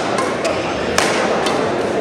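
Badminton rackets striking the shuttlecock during a doubles rally: a few sharp smacks, the loudest about halfway through, over background voices.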